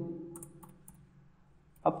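Computer keyboard keys being typed: a few short keystroke clicks in the first second, then a pause.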